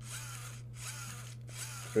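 LEGO SPIKE Prime motor whirring with gear clatter as it drives the Break Dancer model's legs through one full rotation after another, with a short break about once a second.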